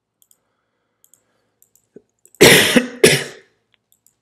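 A person coughing twice in quick succession, the two coughs about half a second apart, after a couple of seconds of quiet.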